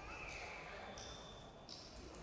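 Faint voices and murmur in a large echoing hall, with no instruments playing yet.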